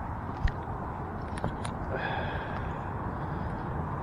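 Steady wind noise on the microphone, with a few small clicks and taps from hands working a jig out of a fish's mouth, about half a second and a second and a half in.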